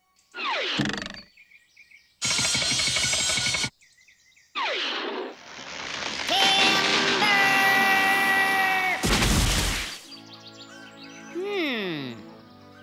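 Cartoon sound effects and music in quick succession: falling whistle-like glides, a burst of noise, a long held pitched call, and a heavy thud about nine seconds in. Quieter music with sliding tones follows.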